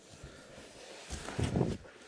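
Foam packaging and cardboard rustling and scraping as a boxed electric scooter is lifted out of its shipping carton, with a louder scuff about one and a half seconds in.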